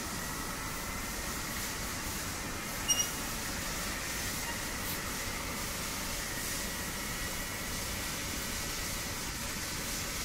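Steady background hiss with a faint thin whine throughout, and one short click with a slight ring about three seconds in as wires are handled on the panel.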